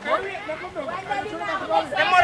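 Chatter: teenage boys' voices talking over one another.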